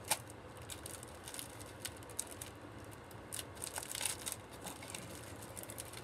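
Intermittent rustling and crinkling of gift packaging being handled and opened, with small sharp clicks scattered through it.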